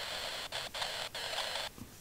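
Faint steady hiss of room noise, broken by a few brief dropouts.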